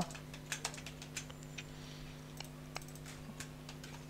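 Typing on a computer keyboard: faint, quick, irregular key clicks over a steady low hum.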